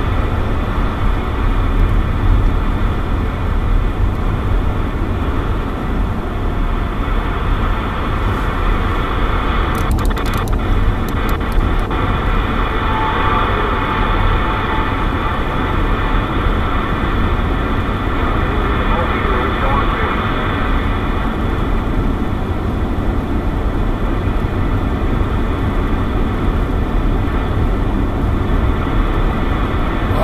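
CB radio receiver hiss and static over the steady road and engine rumble of a moving car, with a weak voice from a distant station faint under the noise. A few sharp clicks about ten seconds in as the radio's channel is changed.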